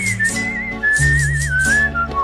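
A whistled melody, a single wavering high tune, played over the song's backing track, whose low bass notes change about a second in.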